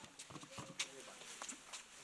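Faint, indistinct voices of people chatting, with a few sharp clicks, the loudest near the middle.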